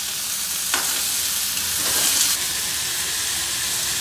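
Chopped onions and tomatoes sizzling in hot oil in a metal kadai, with a spoon stirring and scraping them against the pan a couple of times.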